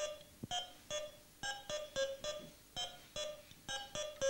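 Electronic wire-maze skill game playing a tune of short beeping notes, about three a second, stepping between two or three pitches.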